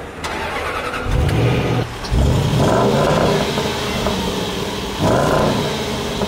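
Range Rover's 510-horsepower supercharged 5.0-litre V8 starting about a second in with a brief flare of revs. The revs rise again just after two seconds and slowly die away, with one more short rev near the end.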